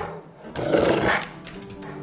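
A Cane Corso growling briefly in play, a short rough rumble about half a second in, over faint background music.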